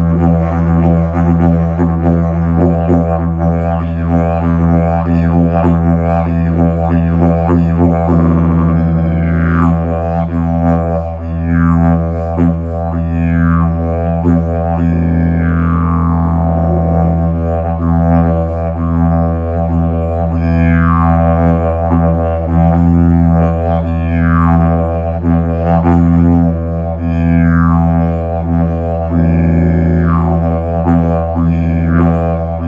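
Hemp didgeridoo in the key of E, droning without a break. From about eight seconds in, repeated falling sweeps in the tone give the drone a rhythmic 'wah' pattern.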